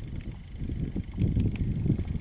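Wind buffeting the microphone, an uneven low rumble that gets somewhat louder about halfway through, with no animal calls to be heard.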